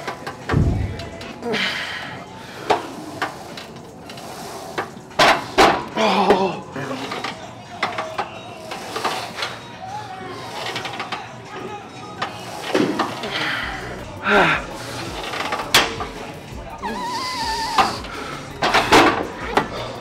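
A man breathing hard and grunting in bursts through a set of single-leg presses on a plate-loaded leg press machine, with a few sharp knocks.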